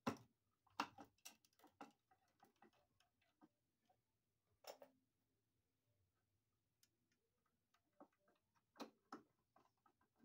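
Faint, scattered clicks and small knocks of a GFCI receptacle being seated in its electrical box and its mounting screws driven in with a hand screwdriver. The clicks are thickest in the first two seconds and again near the end.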